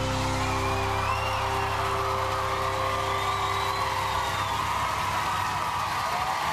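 A band's held final chord rings out and fades about four seconds in, while a live audience cheers and whoops.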